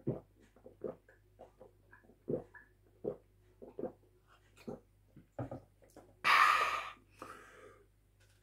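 A person gulping milk from a carton: a run of short swallows about once every half second to a second, then a loud breath out about six seconds in as he stops drinking.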